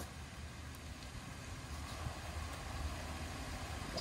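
Faint outdoor background: a low, fluctuating rumble under a steady hiss.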